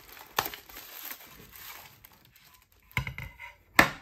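Plastic wrapping crinkling and rustling as a wall mount is unwrapped, with a click about half a second in. Near the end come a few clicks and one sharp clack, the loudest sound, as the hard plastic mount and a small bag of screws and wall anchors are handled on the table.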